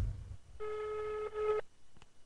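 Ringback tone of an outgoing mobile phone call, heard through the phone's loudspeaker: one steady beep about a second long while the call rings unanswered. A low rumble at the very start.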